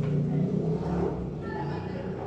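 Low, steady rumble of a motor vehicle engine, slowly fading over the two seconds.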